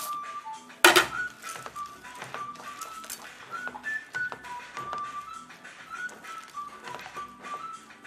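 Soft background music with a slow melody of held notes. About a second in, a loud brief rattle as raw peanuts are tipped into the pan, then light clicking and scraping as a wooden spatula stirs the nuts through caramel in a nonstick pan.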